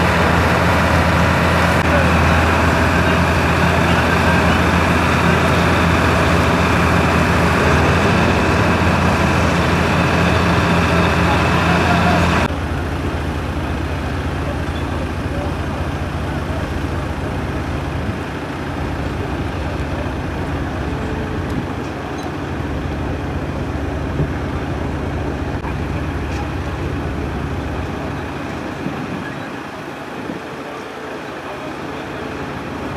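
A motor vehicle's engine running steadily, with a low hum over broad noise and faint voices. The sound drops abruptly in level about twelve seconds in and carries on quieter.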